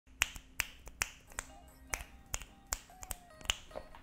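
A run of sharp finger snaps on a steady beat, about nine of them at roughly two and a half a second, over faint steady music tones.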